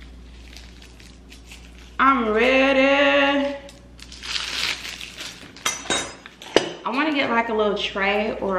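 A woman's voice in one drawn-out sound about two seconds in, then the crinkle of a plastic sleeve being pulled off a stainless steel bar spoon, followed by a few sharp clicks. Voice sounds return near the end.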